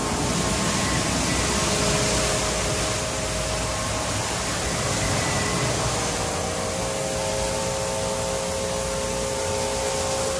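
Mark VII SoftWash XT rollover car wash gantry running its spinning brushes along a car: a steady rush of spraying water and brush noise over a constant motor hum. On this pass the brushes are not making contact with the car.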